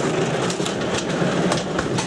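Garage bay door being opened, a continuous rattling rumble with irregular sharp clicks.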